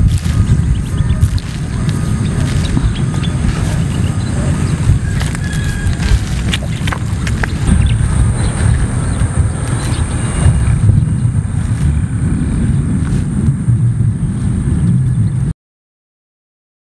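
Wind buffeting the microphone in an open field: a loud, gusty low rumble, with a faint steady high tone joining about halfway. The sound cuts off suddenly near the end.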